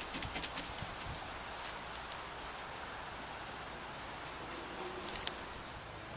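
Paintbrush dabbing resin into fiberglass cloth on a canoe hull: irregular soft taps and ticks, bunched in the first couple of seconds and again near the end, over a faint hiss.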